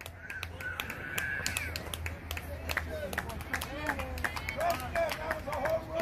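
Indistinct voices of softball players calling out across the field, with one long drawn-out shout in the first two seconds, and scattered sharp clicks.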